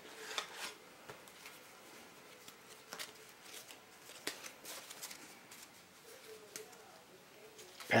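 Quiet handling of a playing card tuck box: a few light clicks and taps as the deck is turned over and set down on a cloth-covered table. A faint, short wavering tone comes in about six seconds in.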